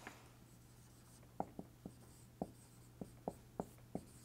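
Dry-erase marker writing on a whiteboard: a run of short, faint strokes starting about a second and a half in.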